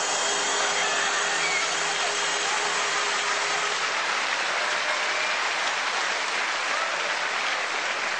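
Audience applauding, a dense and steady clapping.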